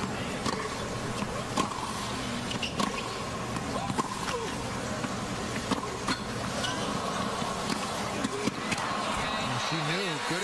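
Tennis rally on a hard court: sharp racket strikes and ball bounces about every second or so, over a steady stadium crowd murmur.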